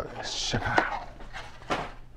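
Foil-wrapped card packs tipped out of a cardboard Prizm Mega box onto a table: a short papery slide, then a couple of sharp knocks as the packs land.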